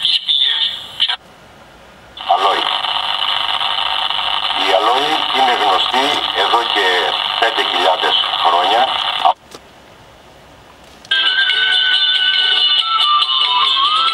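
Broadcast sound from a small portable digital TV's speaker during a channel scan, cutting in and out as it moves from station to station. A man speaks for about seven seconds, the sound drops suddenly to low hiss, and about a second and a half later music with steady held tones comes in.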